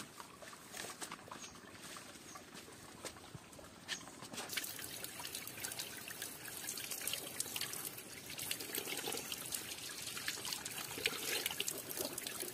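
A thin stream of water pouring from a spout and splashing onto rocks, a steady trickle that comes in about four seconds in. Before it, faint rustling and light crackles in leafy undergrowth.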